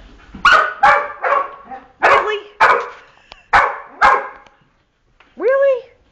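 Australian Shepherd barking demandingly for its squirrel toy: about seven sharp barks, mostly in quick pairs, with a pause before a short rising-and-falling call near the end.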